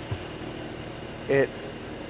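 Steady hum and air-rush of the idling car, with its 3.0-litre turbocharged inline-six running and ventilation fans blowing. There is a brief low thump just after the start.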